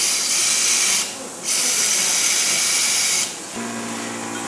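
Loud hissing from operating-theatre equipment in long bursts: it stops briefly about a second in, runs again for nearly two seconds, then gives way to a short steady hum near the end.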